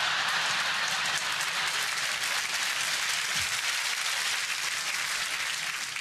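Large theatre audience applauding and laughing at a punchline, a dense steady wash of clapping that eases slightly near the end.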